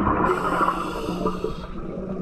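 Scuba diver breathing through a regulator underwater: a hiss of about a second and a half through the regulator over the bubbling, gurgling water noise around the diver.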